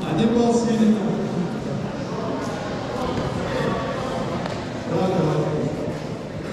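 Indistinct voices echoing in a large sports hall, with two louder calls, one near the start and one about five seconds in.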